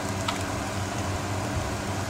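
Onions frying in hot oil and ghee in a large pot, a steady sizzle over a low, steady hum.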